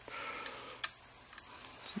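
A few light clicks from a rifle scope being handled and shifted in its steel mounting rings, the sharpest a little under a second in.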